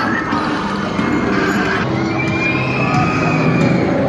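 The Smiler roller coaster's train running along its steel track, with riders screaming, over steady background music.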